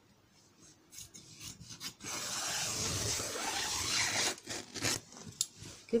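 Bedsheet fabric rubbing and sliding across the table as it is gathered and moved: a few light handling sounds, then about two seconds of continuous rubbing, then scattered light knocks.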